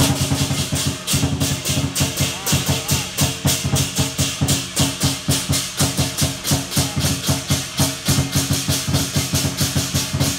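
Lion dance percussion: a large drum with crashing cymbals beating a fast, steady rhythm of about four or five strokes a second. It comes in suddenly and loud at the start.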